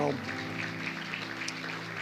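Audience applauding, an even crackling patter, over a soft sustained music chord that is held throughout.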